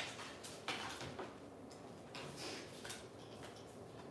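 Faint, irregular clicks and light knocks of crafting tools and dies being handled off the desk as a die cut is set up.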